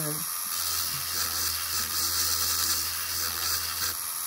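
Small handheld rotary tool running steadily, its bit drilling into a seashell held under water, giving an even hiss over a low motor hum. The water keeps down the shell dust and makes the drill bit last longer.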